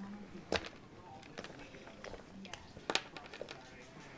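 A hollow chocolate egg shell being snapped and broken apart by hand, with its plastic toy capsule handled: a few small sharp cracks and clicks, the loudest two about half a second in and near three seconds in.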